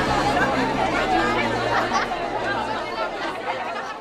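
Many overlapping voices chattering together, with no single speaker standing out. Low music notes die away in the first seconds, and the whole sound grows quieter toward the end.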